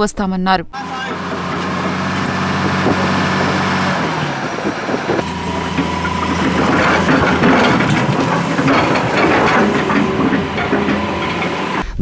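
Hydraulic excavator's diesel engine running steadily. In the second half it is joined by rattling, knocking and scraping as its bucket works against rocks and rubble.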